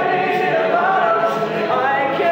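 All-male a cappella group singing: a lead voice over close-harmony backing voices, with no instruments.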